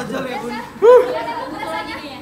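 Several people chattering, with one loud, short exclamation about a second in.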